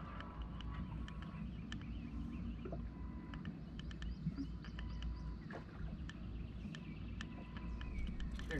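Quiet ambience aboard a small boat on open water: a low rumble with scattered light ticks and splashes of water against the hull, and a faint steady hum that comes and goes through the middle.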